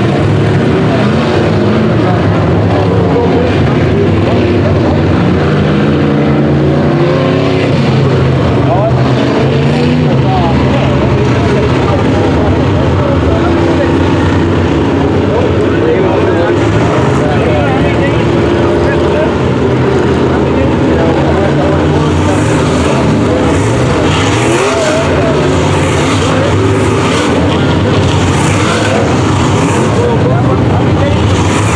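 A pack of dirt-track sport modified race cars running laps, several V8 engines layered together. Their pitch rises and falls as the cars accelerate and back off around the oval.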